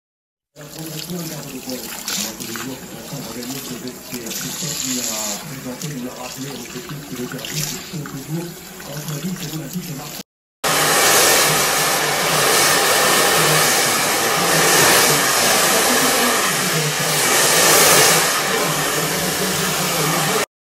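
Salon basin hand shower spraying water over hair during a rinse. About ten seconds in, after a short break, a louder steady rushing noise takes over.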